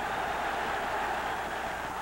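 Steady crowd noise from a football stadium: an even roar with no single shouts standing out.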